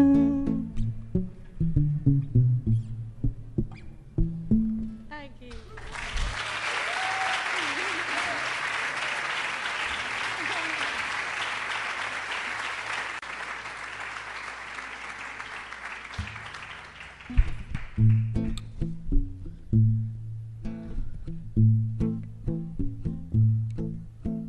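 Nylon-string classical guitar closing a song with a few plucked notes, then an audience applauding for about ten seconds. As the applause dies away, the guitar starts picking the introduction to the next song.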